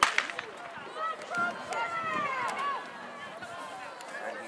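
A starter's pistol fires with a sharp crack right at the start, then spectators shout and cheer as the sprinters leave the blocks.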